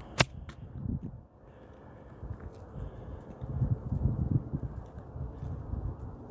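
Handling noise on a phone's microphone: a sharp click just after the start, then irregular muffled low thumps and rumbling as the phone is moved about.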